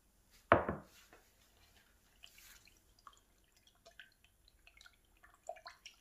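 A single knock about half a second in as a metal paint-product can is set down on the workbench, followed by faint scattered small clicks and ticks while 2K clear coat and hardener are handled in a plastic mixing cup.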